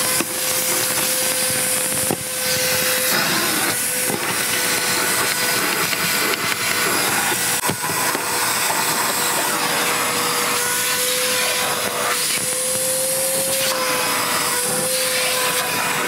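Milwaukee M18 cordless backpack vacuum (0885-20) running steadily with a constant motor whine, its hose nozzle sucking over a car's floor mats, with a couple of small knocks of the nozzle.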